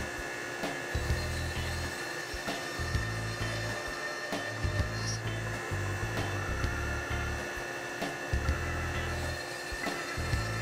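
CNC router spindle running with a steady high whine while a quarter-inch spiral bit plunges peg holes into wood. Background music with a low bass line plays along.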